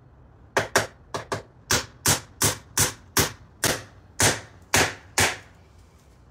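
A hammer driving nails through asphalt shingles into a small wooden roof: about a dozen sharp blows, roughly three a second, starting about half a second in and stopping shortly before the end.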